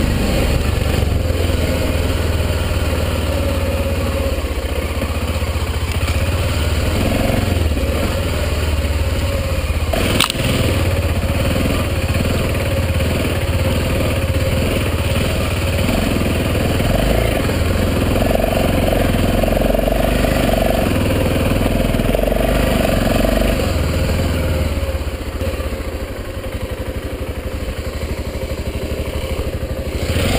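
BMW F650GS motorcycle engine running under way on a rough dirt track, heard from a helmet camera. There is a single sharp knock about ten seconds in, and the engine gets quieter for the last few seconds.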